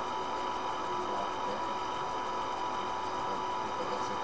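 Steady hiss with a thin constant tone and no distinct sounds: background noise of a computer recording microphone.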